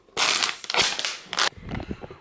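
Loud crinkling and crunching of a plastic water bottle being squeezed, lasting about a second and a half.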